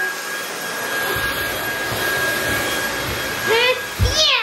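Vacuum cleaner running steadily: an even rush of air with a thin high whine from the motor.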